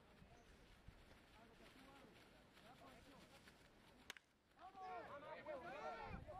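A baseball bat strikes the ball once, a single sharp crack about four seconds in, followed by several voices shouting and cheering.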